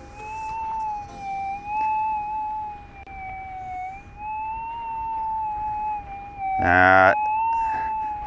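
Minelab GPX 6000 gold detector with an 11-inch coil at sensitivity 10, its threshold tone sounding continuously and wavering slowly up and down in pitch. The tone is loud over salty wet beach sand near the water: the salt is making the machine noisy. A brief loud voice sound comes near the end.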